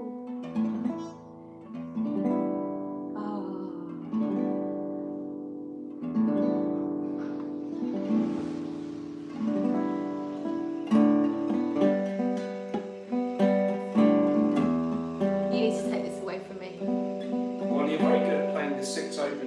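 Acoustic guitar, a luthier-built instrument, played slowly with plucked chords every second or two, each chord left to ring and fade before the next.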